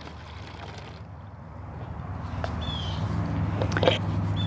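A low engine-like rumble grows steadily louder through the second half, like a distant motor vehicle. A bird gives one short falling chirp about two-thirds of the way in, and there are a couple of faint clicks.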